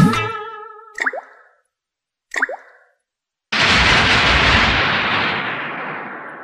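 Two water-drop plops about a second apart, each a quick falling pitch, after the music fades out. About halfway through comes a sudden loud crash of thunder with the noise of heavy rain, which slowly dies away: a rainstorm sound effect.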